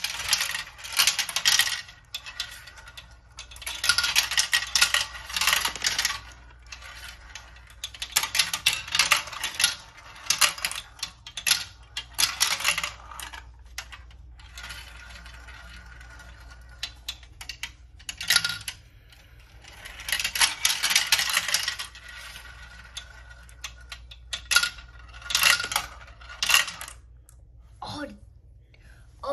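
Marbles rolling and clattering down a plastic marble run, rattling through its tubes and funnels. The clicking comes in several runs of a second or two each, with quieter gaps between.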